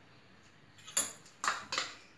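Quiet for about a second, then three sharp metallic clinks against a stainless steel mixer-grinder jar as ingredients are tipped in from a bowl. The first clink rings briefly.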